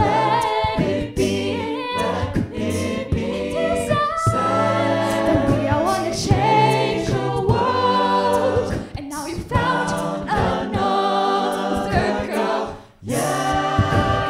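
Mixed-voice a cappella group singing a pop song: a female lead voice over sung backing harmonies and a beatboxed vocal-percussion rhythm. About a second before the end the voices cut out together for a moment, then come back in.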